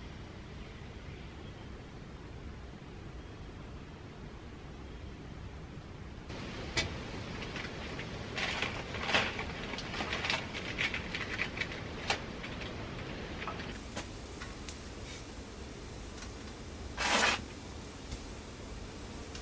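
Quiet background for several seconds, then irregular rustling and clicking as camping gear and bags are handled and packed, with one short, louder rustle near the end.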